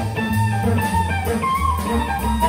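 Jazz quartet playing live: two electric guitars play lines over double bass and drum kit.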